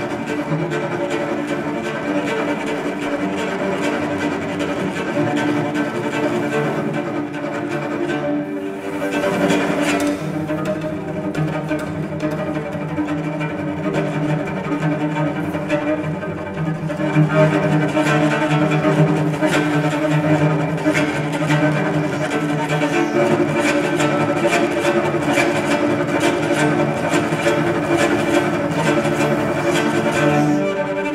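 Solo cello played with a bow, a continuous line of pitched notes. About halfway in it gets louder and busier, with quick repeated bow strokes.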